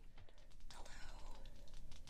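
Soft ASMR whispering with scattered small clicks.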